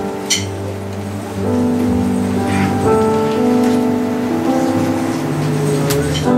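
Electronic keyboard playing the opening of a worship song: slow held chords over a bass line, changing about once a second, with no singing yet.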